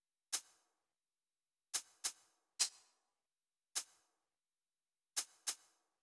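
Sampled shaker played solo from a drum rack: seven short, bright hits in a sparse, uneven rhythm with silence between them.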